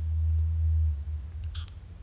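A low, steady hum, strongest for about the first second and then fading, with a faint short high sound near the end.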